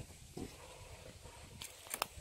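Faint footsteps of a hiker walking up a paved mountain trail, a few soft steps over a low, steady background rumble.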